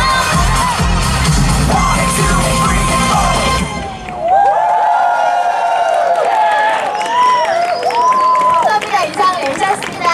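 Amplified pop dance music with a heavy bass beat stops abruptly about four seconds in, and an audience breaks into cheering with high-pitched shouts.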